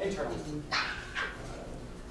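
Indistinct voices of people talking off-microphone, with a couple of short exclamations or calls about a second in.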